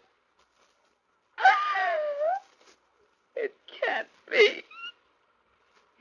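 A woman's anguished wail, about a second long, its pitch bending down and back up, followed by a few short sobbing gasps: an actress playing hysteria on an old radio recording.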